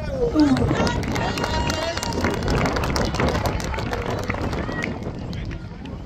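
Voices of footballers and spectators calling out at a distance, over a steady low wind rumble on the microphone.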